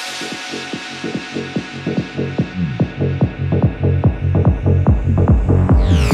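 Electronic dance music breakdown in a psytrance remix: a bare, pulsing bass rhythm builds back up, growing louder and busier, with a falling sweep near the end leading back into the full track.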